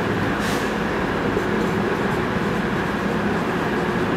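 A steady mechanical whir with a low hum, unchanging in level. Over it come short scratchy strokes of a marker writing on a whiteboard, the clearest about half a second in.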